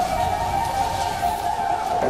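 Chinese bamboo flute (dizi) holding one steady, slightly wavering note over a breathy hiss, played on the drama's soundtrack.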